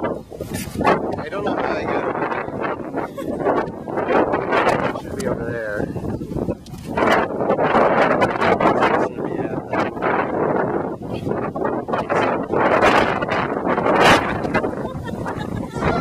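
People talking close to the microphone, with a few brief sharp knocks.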